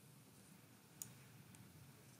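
A single faint click of a computer mouse button about halfway through, over near-silent room tone.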